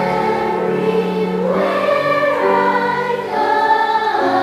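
Children's choir singing a spiritual together, holding long notes that step from one pitch to the next.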